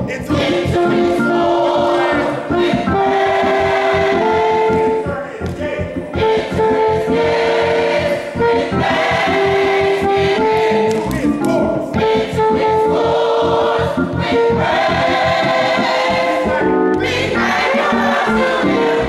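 Gospel choir singing, holding long notes that move from pitch to pitch.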